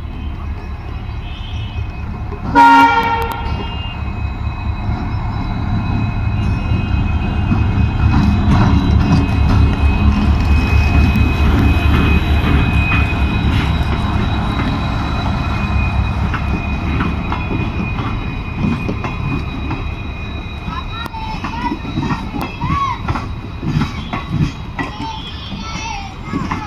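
An Indian Railways WDP4D diesel locomotive gives one short blast of its dual-tone horn about three seconds in, then the rumble of its two-stroke EMD engine swells loud as it passes close by pulling away with a passenger train, and fades as the coaches roll past with wheels clicking over the rail joints.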